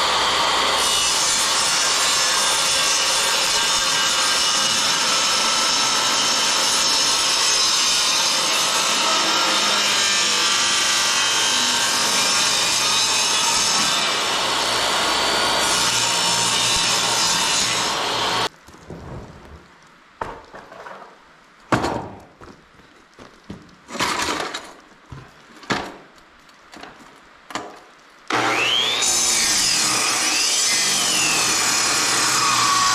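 Jobsite table saw running and ripping a sheet of plywood, a loud steady saw noise that stops abruptly about 18 seconds in. Several sharp knocks and clunks of wood being handled follow. Near the end a circular saw starts and cuts into a board.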